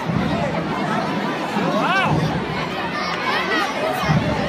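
Crowd chatter: many voices talking at once, with one voice calling out, rising and falling in pitch, about two seconds in.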